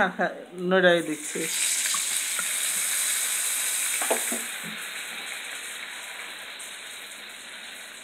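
Spices in hot oil in a kadai sizzling loudly as a liquid is poured in about a second in. The sizzle is strongest for about three seconds, then slowly dies down.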